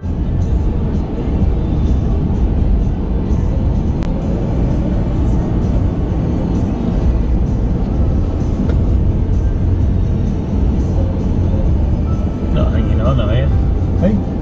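Car driving along a road, heard from inside the cabin: a steady, loud low rumble of engine and road with a hiss of tyres. Voices begin talking near the end.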